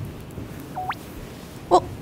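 A short electronic beep that slides sharply upward in pitch, a cartoon-style edited sound effect. Near the end, a person's brief, surprised "eh?".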